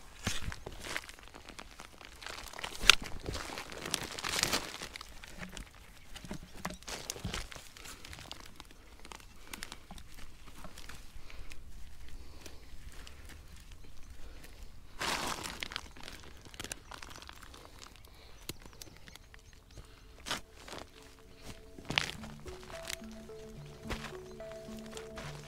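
A metal spade cutting into soil and clumps of Jerusalem artichoke tubers being pulled and shaken free of earth: scattered scrapes, crunches and knocks, the loudest about three seconds in. Background music comes in near the end.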